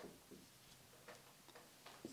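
Faint, irregular ticks and taps of a marker pen striking and stroking a whiteboard while a word is written, against near silence.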